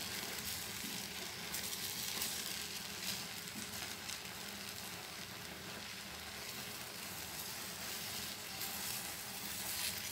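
Thick caramel custard bubbling and sputtering steadily in a pan over a gas flame as it thickens, stirred with a wooden spatula.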